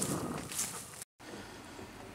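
Faint outdoor noise, like wind and movement on a grassy bank, then a brief dropout at an edit, after which a faint steady low hum sounds from inside a pickup truck's cab with the engine running.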